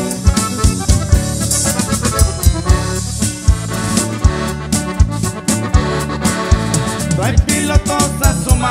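Norteño band playing an instrumental passage: accordion leading over electric bass and drum kit, with a steady beat.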